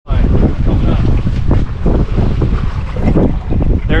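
Wind buffeting the microphone on a boat at sea: a loud, continuous, uneven rumble with the sound of open water under it.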